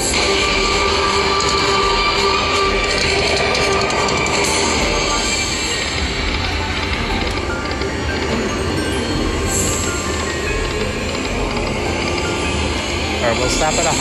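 Walking Dead video slot machine playing its music and spin sounds as the reels turn, over the steady din of a busy casino floor.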